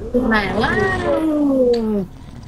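A single long drawn-out call that rises briefly, then slides slowly down in pitch for over a second.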